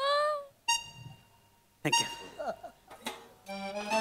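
Short snatches of background music: a quick rising glide at the start, a brief held note just under a second in, and another musical phrase near the end, with a short spoken word in between.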